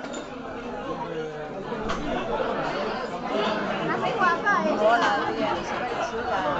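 People talking and chatting in a room, with no music playing. The voices are loudest near the end.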